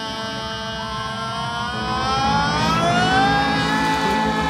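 Live band at the close of a rock song: a singer holds one long wailing note that slides up in pitch about halfway through and holds there, over bass and drums.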